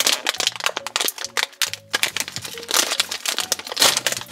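A foil-lined plastic blind-bag packet crinkling and tearing as hands pull it open, a rapid, uneven run of crackles throughout. Quieter background music with held notes runs underneath.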